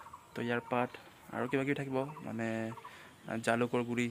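A man's voice speaking in short phrases, with one drawn-out, held sound about two seconds in.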